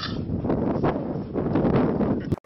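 Wind buffeting the camera microphone: a loud, uneven rumble that rises and falls in gusts.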